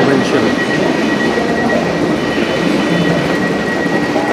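A busy station platform beside a standing passenger train: people's voices in the background and a steady high-pitched tone from the train.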